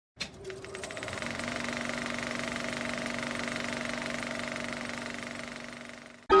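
Film projector running: a few sharp clicks as it starts, then a steady, rapid mechanical clatter with a hum that settles slightly higher about a second in, fading near the end.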